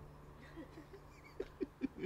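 A small Pomeranian held right up to a microphone makes a few faint, short sounds, three of them in quick succession about a second and a half in.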